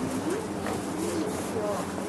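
Indistinct chatter of several people talking, with no words clear, over a steady background hubbub.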